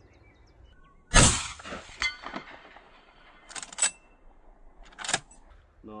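A single .44 Magnum rifle shot from a Chiappa 1892 lever-action about a second in, very loud, with a long echo trailing after it. A few shorter, sharp metallic clacks follow over the next few seconds.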